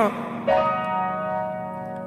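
Backing beat of a rap freestyle with the vocal paused: a bell-like synth note rings out about half a second in and slowly fades.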